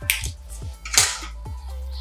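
Two sharp clicks of handling, one at the start and a louder one about a second in, as an opened drone battery pack is turned in the hands and a pair of tweezers is picked up. A music bed plays underneath.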